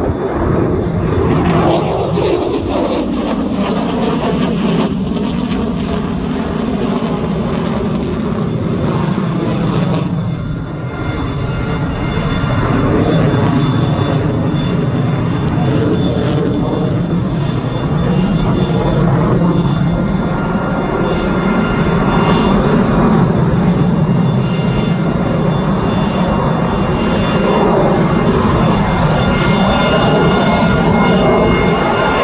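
The twin Pratt & Whitney F119 turbofan engines of an F-22 Raptor in flight, loud throughout. Over the first few seconds the pitch falls as the jet passes, then a steady jet rumble with a faint high whine continues, dipping briefly about ten seconds in and building again.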